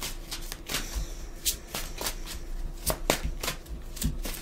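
A deck of divination cards being shuffled and handled, an irregular string of short crisp card clicks and flicks.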